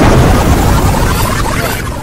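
The hip hop beat cuts off and a sudden loud explosion-like boom closes the track, with a long rumbling tail that slowly fades away.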